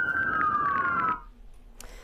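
An emergency vehicle's siren wailing, its pitch sliding down, then cut off abruptly just over a second in.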